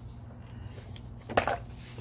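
Handling noise as a denim belt is pulled out of a backpack: a single short knock about one and a half seconds in, over a low steady hum.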